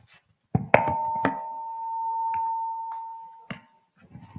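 Knocks and clicks of a handheld microphone being handled, then a steady ringing tone of PA feedback that swells and fades over about three seconds.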